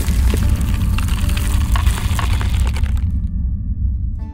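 Logo sting sound effect: a deep rumble with crackling that thins out about three seconds in, leaving a low drone and a few steady tones.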